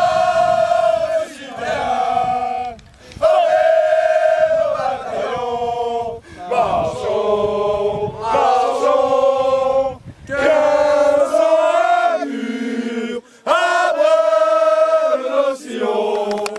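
A group of young men singing an anthem together in unison, in loud, held phrases with brief pauses for breath between them.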